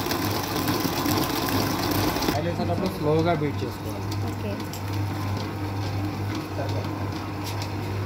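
Commercial planetary stand mixer running with a steady motor hum, its wire whisk beating cake batter in a steel bowl.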